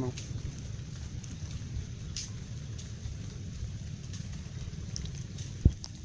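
Steady patter of rain falling on a waterlogged field and foliage, with a few scattered drip ticks. One short, loud thump comes near the end.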